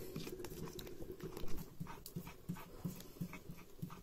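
A round hand-held stone rocked and rubbed on a flat stone slab, crushing chillies and tomatoes into a wet chutney. After a few scattered clicks, the strokes settle into a steady rhythm of about three a second.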